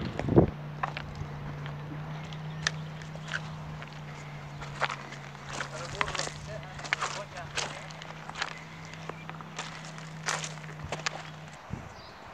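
Scattered crunching steps on loose river gravel, a few a second, over a steady low hum that starts about half a second in and stops just before the end.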